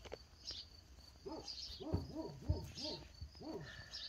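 A run of repeated hooting animal calls, about three a second, starting about a second in.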